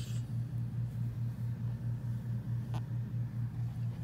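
Steady low hum with a fast, even pulse, and a single light click near the end.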